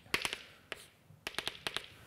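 Chalk tapping on a blackboard as short marks are drawn: a quick run of sharp taps, a pause near the middle, then a second run of taps.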